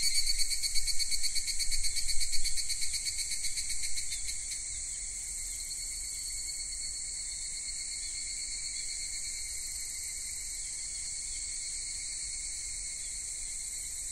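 High-pitched insect chirping, like crickets. A rapid pulsing trill for about the first four seconds, then a steady, even high buzz at a lower level.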